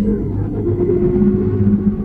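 Car engine sound effect running at steady low revs: a deep, muffled rumble with almost no high end.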